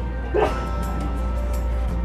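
Shop background music playing steadily over a low hum, with one brief high vocal sound about half a second in.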